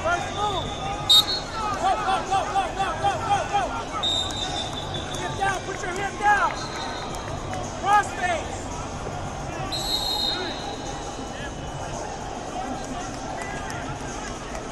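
Arena wrestling bout: a referee's whistle blows about a second in, then a quick run of short squeaks and shouts comes as the wrestlers scramble on the mat. Brief high whistle tones follow near four and ten seconds over steady crowd babble.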